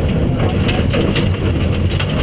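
Rally car engine running hard, heard from inside the stripped cabin, with gravel and stones clicking and rattling against the car as it drives along a loose gravel stage.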